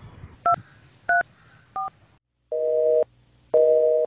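Mobile phone keypad tones: three short two-note dialling beeps about half a second apart. After a pause, a two-tone telephone line tone sounds twice, each pulse half a second long with half a second between them, as the call goes through.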